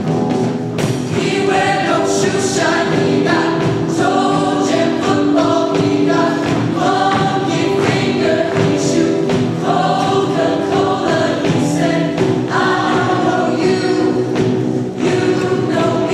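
Large mixed show choir singing in harmony, with a steady beat behind the voices.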